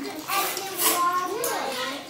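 Kindergarten children talking and chattering, with high-pitched young voices.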